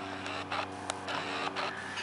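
A steady low mechanical hum, with a few faint clicks scattered through it.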